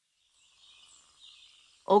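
Near silence, then a faint, high-pitched outdoor ambience of bird chirping fades in about half a second in.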